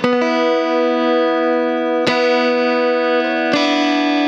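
Electric Fender Stratocaster strummed three times: a B-minor figure with a note fretted at the fourth fret of the G string and the open B and high E strings ringing together. The chord rings on between the strums.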